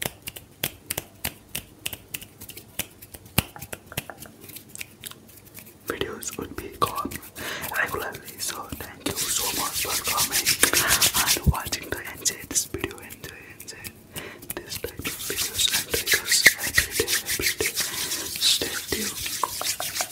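Fast, close-miked hand sounds. For about the first six seconds there is a quick run of small clicks and taps. Then comes louder, rapid rubbing and swishing of the palms against each other with a hissy edge, which eases off around fourteen seconds and builds again toward the end.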